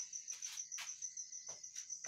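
Faint cricket chirping, a steady high-pitched trill in a fast, even pulse, with a few short sharp sounds over it.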